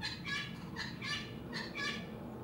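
A quick run of short, high squeaks from circlip pliers and a steel circlip as the pliers work the clip over a small brushless motor's shaft.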